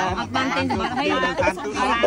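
Women talking in conversation.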